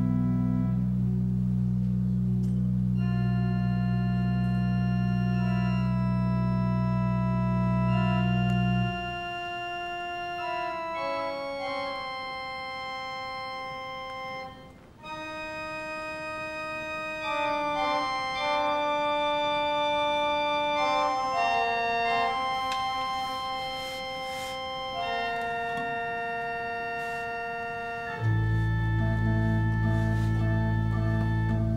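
Pipe organ playing sustained chords over a deep held pedal bass. About nine seconds in, the bass drops out, leaving held middle and upper notes that move step by step. The deep pedal returns shortly before the end.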